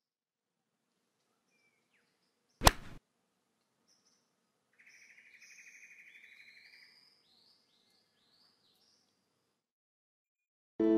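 Logo sound effects: a single sharp crack like a golf club striking a ball, a little under three seconds in, followed by faint bird chirps. The chirps are a steady trill, then a string of short arched chirps.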